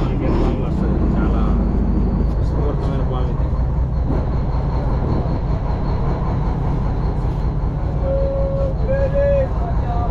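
Fishing boat's engine running steadily, a low, even hum, with faint voices over it. Near the end there are two short, held, pitched calls.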